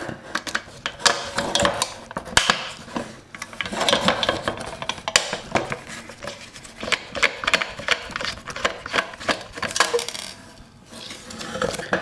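Small screwdriver working the screws on the lid of a metal power-supply enclosure: a dense run of quick metallic clicks, scrapes and clinks of steel on the metal box.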